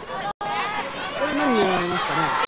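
Wrestling crowd shouting and calling out, several voices at once, one call gliding downward near the end. The sound cuts out for an instant about a third of a second in.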